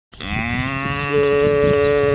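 A cow mooing: one long, steady low call.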